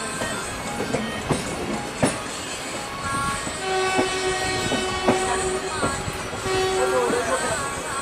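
Passenger express train running at speed, heard from an open coach doorway: steady wheel and track rumble with a few sharp knocks from rail joints. About halfway through, the locomotive horn sounds one long steady blast lasting about three seconds.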